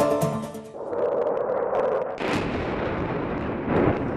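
A short musical news-bumper sting ends, followed by a noisy whoosh. About two seconds in, a loud, sustained rush of explosion and gunfire noise takes over, swelling near the end.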